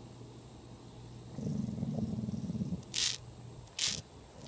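A dog growling low at a cicada for about a second and a half, then two short, sharp sniffs as it noses at the bug.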